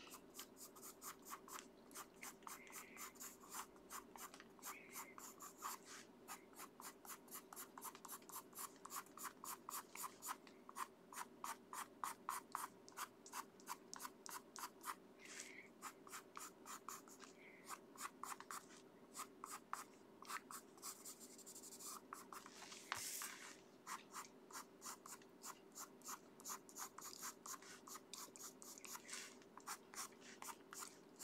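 Prismacolor Premier coloured pencil (cool grey 70%) scratching on paper in short, quick back-and-forth shading strokes, about three a second, faint. A low steady hum runs underneath.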